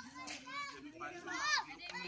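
Children's voices calling and chattering, high-pitched, with the loudest call about one and a half seconds in.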